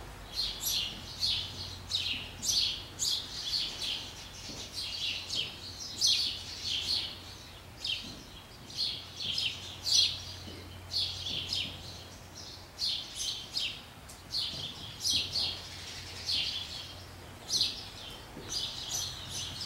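Small birds chirping continuously, many short high chirps coming in irregular clusters.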